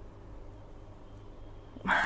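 Quiet room tone with a low steady hum. Near the end a woman's breathy laugh begins.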